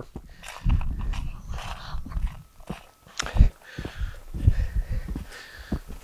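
Footsteps on packed snow with jacket rustle against a clip-on microphone: irregular low thumps and soft crunching, with a sharp knock about three seconds in.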